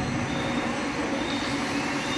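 Steady mechanical hum and rumble of a hydraulic pipe-elbow forming machine running, with a few faint steady tones over it.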